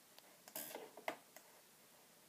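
A few quiet clicks from laptop keys being pressed, the loudest about a second in, with a short rustle just before it.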